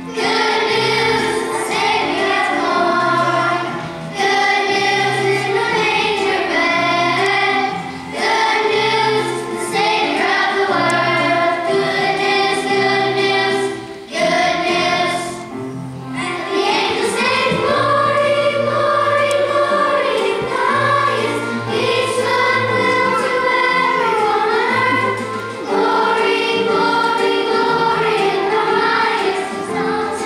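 Elementary-school children's choir singing a song, phrase after phrase, with short breaks between phrases.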